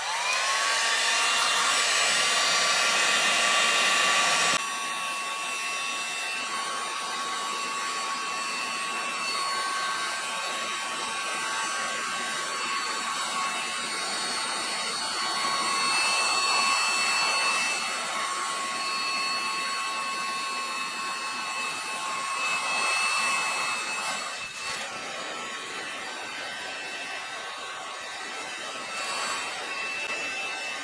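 Electric heat gun switched on, its fan spinning up to a steady whine over a rush of air. The sound steps down in level about four and a half seconds in and then runs on steadily. It is heating sun-faded, oxidised black plastic to bring its oils back to the surface.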